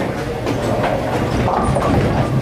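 Bowling balls rolling down the lanes in a steady, loud rumble that fills a busy bowling center.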